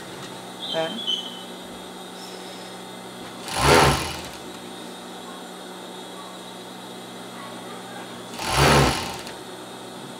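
Siruba 737 industrial overlock (serger) stitching in two short runs of about a second each, a few seconds apart, as ribbing is sewn onto the garment. A steady low hum sits between the runs.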